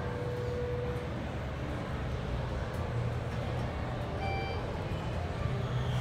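Schindler glass traction elevator car travelling upward with a steady low hum, and a short high-pitched chime about four seconds in as the car reaches a floor.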